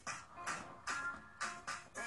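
Music with a beat playing through an Asus VivoBook E12 laptop's built-in speakers, heard across the room.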